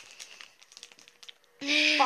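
Faint crinkling, then, about one and a half seconds in, a person's voice starts, muffled and garbled by a mouth stuffed with marshmallows.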